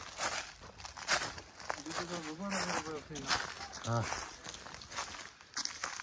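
Footsteps on a dry forest trail, an irregular run of crunches and scuffs, with faint voices speaking in the background.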